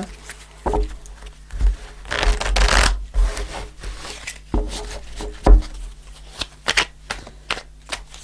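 A tarot deck being shuffled by hand: a dense rustle of cards about two seconds in, then scattered card clicks and taps. A low thump of hands on the deck about halfway through is the loudest sound.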